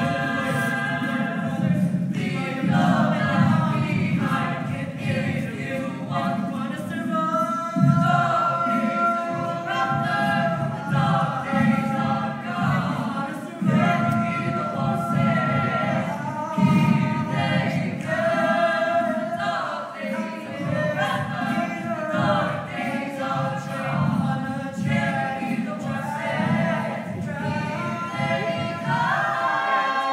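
A cappella vocal group singing in harmony, several voices at once over a pulsing low bass part.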